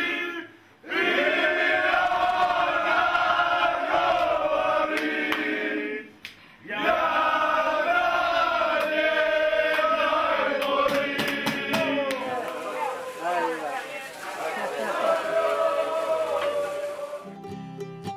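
A group of men singing a celebration chant together in phrases, broken by two short pauses about half a second in and about six seconds in. A run of sharp hits comes about ten to twelve seconds in, and the singing cuts off near the end.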